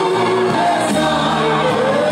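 A group of voices singing a gospel song through microphones, loud and steady.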